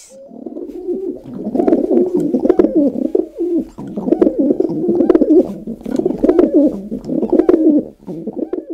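Domestic pigeons (rock doves) cooing: low, warbling coos that run on and overlap without a break.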